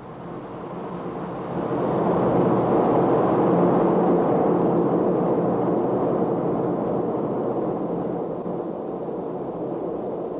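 Jet airliner engines: a steady rushing drone that swells over the first two seconds, holds, then slowly eases off.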